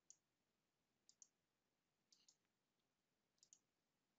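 Faint computer mouse button clicks, mostly in quick pairs, four groups about a second apart.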